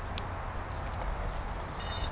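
Steady rumbling background noise, strongest in the deep lows, with a brief crackle just before the end.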